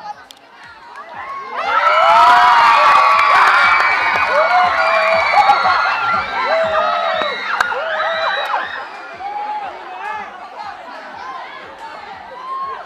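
A large crowd of students cheering, shrieking and shouting together. It swells suddenly about a second and a half in, stays loudest for a couple of seconds, then gradually dies down to scattered shouts and chatter.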